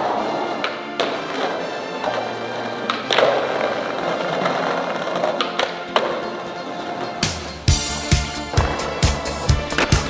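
Music with a skateboard: wheels rolling on pavement and the board clacking and knocking in scattered sharp hits. A strong, regular drum beat comes in about seven seconds in.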